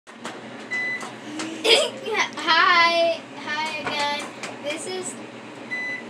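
Young children's high voices talking, with a short high beep about a second in and another near the end.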